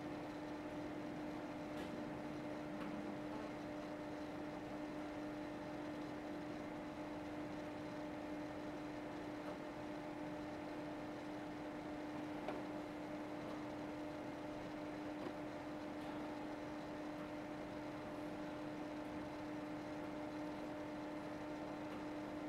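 Steady room hum: a constant mid-pitched electrical hum over a faint even hiss, with one faint click about twelve seconds in.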